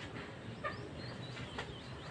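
A few faint, short bird calls over quiet background.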